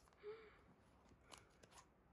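Near silence, with faint rustling and a few light clicks as the lid of an iPad Pro's cardboard box is lifted off.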